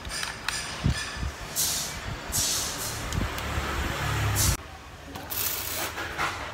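Handling noises as the parts of a small home-made fan and its power bank are set down and fitted: a few short knocks and several brief hissy scrapes, with a low rumble for about a second past the middle.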